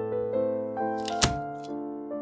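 Soft piano music, with one sharp crack a little over a second in: the flat of a chef's knife is pressed down on a garlic clove, crushing it against a wooden cutting board.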